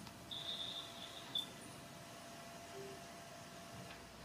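A faint high-pitched electronic beep, about a second long, from the telephone conference line while a remote participant unmutes, over a low steady room hum.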